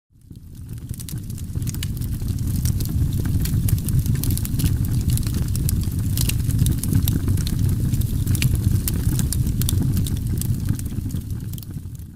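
A steady low rumble with frequent sharp crackles and pops through it, fading in over the first few seconds and fading out near the end.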